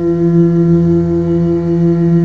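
A man singing one long held note into a microphone, steady in pitch throughout.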